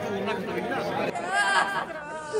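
Several people talking over one another. About a second in, a single voice takes over, louder and wavering in pitch.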